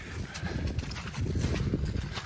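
Footsteps of people walking over grass and dry fallen leaves: many small irregular rustles and ticks over a low rumble.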